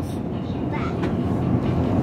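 Steady low rumble of supermarket background noise, with the movement of a camera carried while walking.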